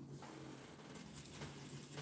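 Quiet room tone with a faint, steady low hum; no distinct sound stands out.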